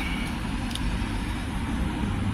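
Steady low rumble of vehicle noise heard from inside a car's cabin.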